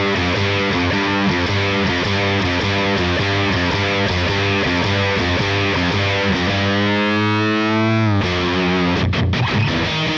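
Heavily distorted electric guitar through a Line 6 Helix amp-modelling preset, with the boost block just switched on, playing a driving riff of quickly repeated notes. About six and a half seconds in, a note slides steadily upward in pitch for nearly two seconds, then breaks off. A few short choppy stops follow near the end.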